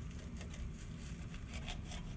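Kitchen knife cutting the ends off a bundle of white pine needles on a wooden cutting board: a few faint clicks and scrapes over a steady low hum.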